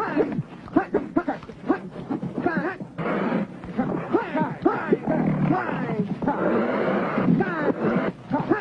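Cheetahs snarling and yowling over a springbok kill in a dense run of short calls that slide up and down in pitch, as men move in to take the carcass from them.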